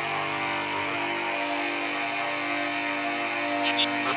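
Live electronic music in a beatless breakdown: a sustained synthesizer drone of several held tones with a faint fine grainy texture, and a few short percussive hits coming back just before the end.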